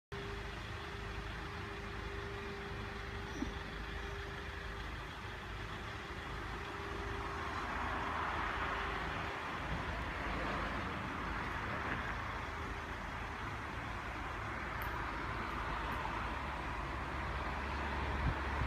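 Steady low rumble of a motor vehicle, with a faint steady hum that stops about halfway through and a small click early on.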